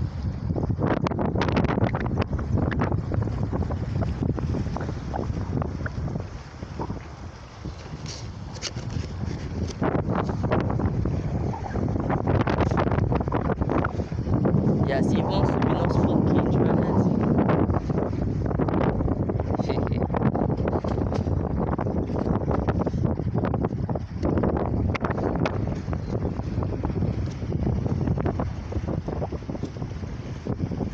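Strong wind buffeting the phone's microphone, a loud, uneven rumble with gusts, over water around a small boat.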